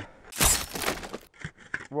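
A burst of crunching and breaking, about a second long, as icy packed snow is broken up with a pick while digging.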